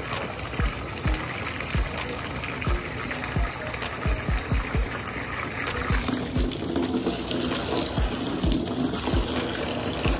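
A garden hose spraying water into a plastic tub, a steady splashing fill, with irregular low thumps underneath.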